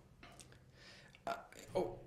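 A pause in a man's speech: faint room noise and a soft breath in, then a short hesitant "uh" just over a second in.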